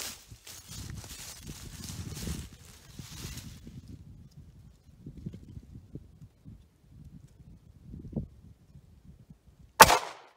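A single loud, sharp gunshot near the end from a Taurus GX4 9mm pistol firing a 115-grain standard-pressure hollow point into a ballistic gel block. Low rustling precedes it.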